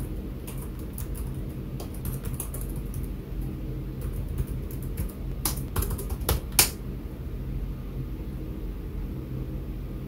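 Typing on a computer keyboard: irregular key clicks as a terminal command and then a password are entered, with a louder run of keypresses about five and a half to six and a half seconds in. A steady low hum runs underneath.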